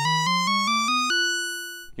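Moog Werkstatt-01 analog synthesizer played as a quick rising run of short notes, ending on a higher note that is held and fades out near the end. Its LFO, patched to the keyboard control voltage, follows the keys as a second oscillator, but not yet tuned to a perfect octave.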